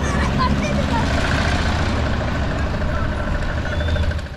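Steady wind rumble and road noise from a moving e-trike, with a few faint, brief voices in the background.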